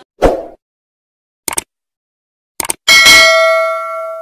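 Subscribe-button animation sound effects: a short thump near the start, two quick double clicks about a second apart, then a loud bell ding about three seconds in that rings on and fades.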